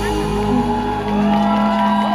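A live pop band plays through the stage PA, with held chords and saxophone heard from the audience. The low bass drops away near the end.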